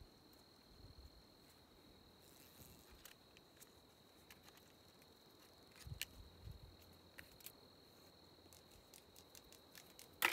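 Near silence with a steady, high-pitched insect trill held throughout, and faint rustles and small clicks of plastic flagging tape and thin wire being handled, a few slightly stronger about six seconds in.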